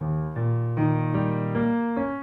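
Piano playing an E-flat seventh chord as a rising arpeggio from the bass: E-flat, B-flat, E-flat, G, B-flat, D-flat, about two notes a second, each held ringing under the next. It is the dominant chord that leads back to A-flat.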